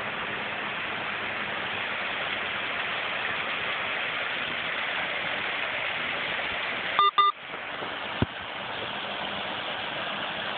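Water splashing steadily over a small stone waterfall into a pond. About seven seconds in, two short electronic beeps, the loudest sounds here, are followed a second later by a single click.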